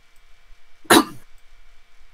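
Speech only: a single short spoken "yeah" about a second in, breathy enough to sound a little like a cough, over a faint steady hum.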